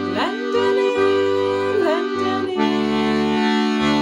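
Castagnari Handry 18 G/C diatonic button accordion (melodeon) playing held chords over a rhythmic left-hand bass, the bass notes pulsing on and off. The chord and bass change about two-thirds of the way through.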